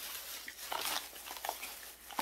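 A shopping bag rustling as it is searched through by hand, with a few light crinkles.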